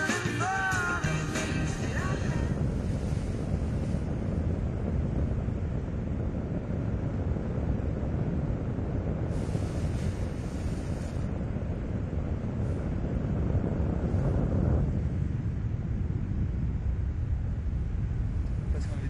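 Guitar-led rock music that stops about two seconds in, followed by steady wind noise on the microphone, a low rushing that thins a little in its upper range near the end.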